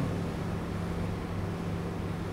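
Steady low hum with an even hiss: the room's background noise in a pause between speech, with no sudden sounds.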